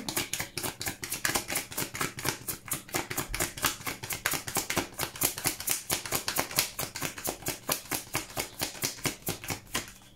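A deck of tarot cards being hand-shuffled: a fast, even patter of card edges slapping and flicking, about five or six a second, that stops at the end.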